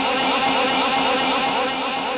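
A man laughing into a microphone: an unbroken run of short laugh pulses, about five a second.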